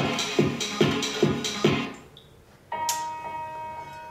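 Electronic music with a steady beat, about two and a half beats a second, playing from the iPhone 4S's speaker; it stops about two seconds in and, after a brief gap, a different track starts with sustained tones, as songs are skipped.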